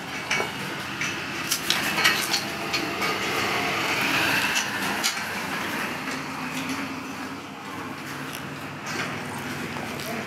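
Irregular metal clinks and rattles, the loudest about one and a half to two and a half seconds in, over steady barn noise: cattle shifting in steel headlock stanchions and a hand-held tissue sampling applicator being worked at a cow's ear.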